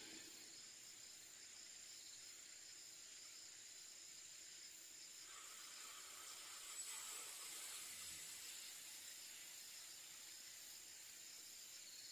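Near silence with a long, slow breath blown out through pursed lips in a deep-breathing exercise: a faint hiss that swells from about five seconds in and fades near the end. A faint steady high tone lies underneath.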